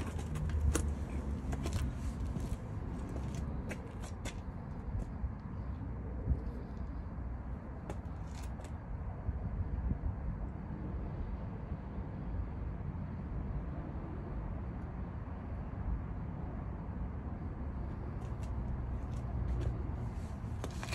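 Steady low outdoor background rumble, with scattered small clicks and taps of handling in roughly the first half and again near the end.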